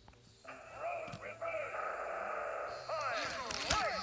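Toy-truck TV commercial soundtrack played through a television speaker: overlapping excited voices with sliding pitch, starting about half a second in after near silence.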